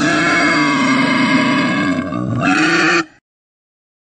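A loud, drawn-out animal-like roar used as a sound effect. It is held for about three seconds and then cuts off suddenly.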